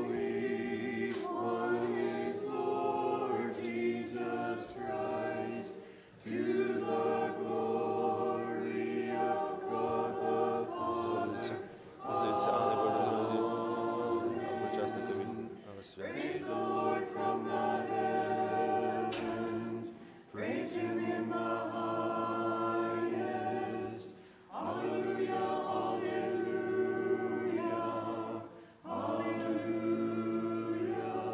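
Small mixed church choir singing the communion verse a cappella, in sustained chordal phrases of about four to six seconds with brief pauses between them.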